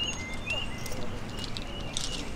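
A songbird calling over and over, short rising chirps about twice a second, with faint high ticks between them.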